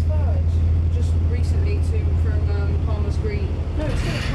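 A bus engine's steady low drone, heard from inside the passenger cabin while the bus waits at a junction, with voices talking over it.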